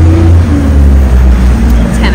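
A vehicle engine running nearby: a loud, steady low rumble.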